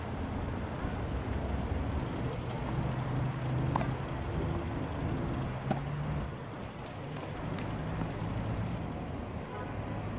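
Tennis ball struck back and forth in a rally, a sharp crack of racket on ball about every two seconds. Behind it is a steady low hum of road traffic, with a vehicle engine droning through the middle.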